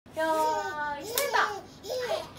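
Voices: a held vocal note, then gliding excited calls as the babies squeal and laugh, with a sharp hand clap about a second in.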